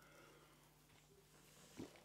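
Near silence: room tone with a faint steady low hum, and one soft brief sound near the end.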